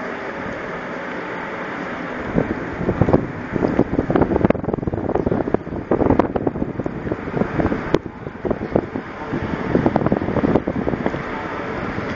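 Wind buffeting the microphone in irregular gusts, starting a couple of seconds in, over the steady drone of a ship's machinery.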